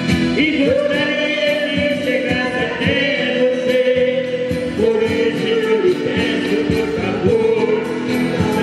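Live Brazilian música raiz: a woman sings long held, wavering notes into a microphone, with accordion and strummed acoustic guitars playing along over a PA.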